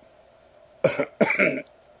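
A man coughing and clearing his throat: a quick run of short, loud coughs lasting under a second, starting a little before the middle.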